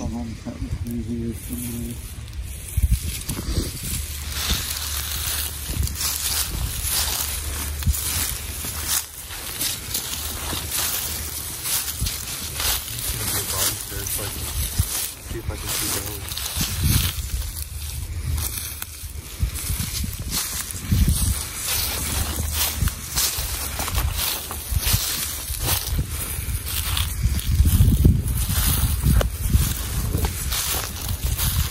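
Footsteps through dry grass and brush, with irregular crunching and swishing of stems and clothing as people walk.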